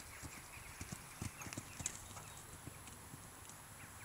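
Faint hoofbeats of a horse cantering on a sand arena surface, a run of soft irregular thuds.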